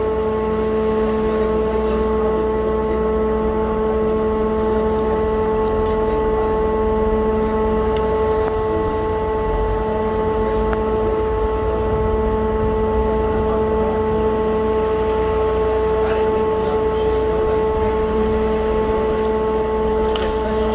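A steady mechanical hum with several fixed tones over a low rumble, unchanging throughout.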